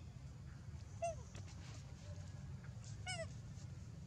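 Baby macaque giving two short, high squeaks about two seconds apart, each dropping in pitch; the first, about a second in, is the louder. A steady low rumble runs underneath.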